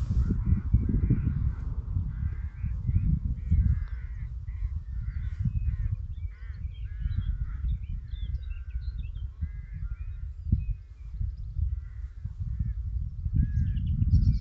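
Wind buffeting the microphone with a loud, uneven low rumble, while birds call repeatedly in the background with short harsh calls.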